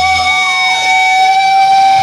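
Electric guitar feedback through an amp: a loud sustained ringing tone, with a second pitch wavering and gliding above it. The low rumble underneath dies away about half a second in.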